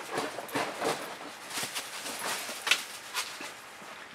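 Dogs running through dry leaves: irregular crunching footfalls and rustling, several a second.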